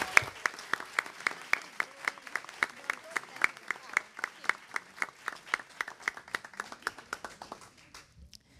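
Group applause: many people clapping, with one pair of hands close to the microphone clapping sharply and evenly about three or four times a second. The clapping dies away just before the end.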